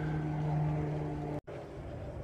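A steady, even motor hum with a low droning tone. It cuts off abruptly about one and a half seconds in, and a fainter steady hum follows.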